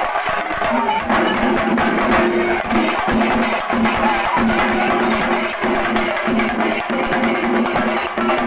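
Singarimelam ensemble playing loud and without a break: chenda drums beaten in fast, dense strokes over cymbal clashes, with a pitched note held in short repeating phrases.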